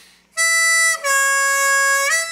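Diatonic harmonica in F, three-hole draw: the plain note sounds briefly, then is bent down in pitch by drawing harder and held, easing back up to the unbent note at the very end. It is a draw bend, the note-bending technique that gives blues harp its wailing sound.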